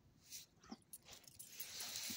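Faint sounds from a small dog: a brief whimper under a second in, then a rustling scuff near the end as the dog gets up.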